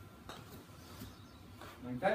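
Mostly quiet small room with a few faint light clicks and shuffles of a golfer stepping onto a hitting mat and settling over the ball. A brief bit of voice comes near the end.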